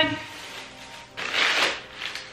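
Thin plastic shopping bag rustling and crinkling as a wicker basket is pulled out of it, loudest about a second and a half in.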